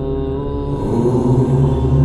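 Chanting of "Om" held on one long, steady note; just under a second in the sound changes and swells slightly as the chant moves into its next part.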